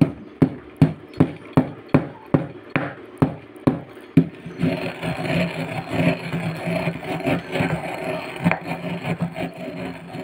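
A pestle pounding eggshells in a mortar, about two and a half strikes a second, crushing them toward powder. After about four and a half seconds the strikes give way to a steady grinding scrape as the pestle is worked round the bowl.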